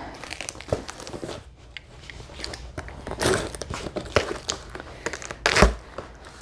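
Cardboard box being torn open by hand: packing tape and cardboard flaps ripping and crinkling in short bursts, with a thump near the end.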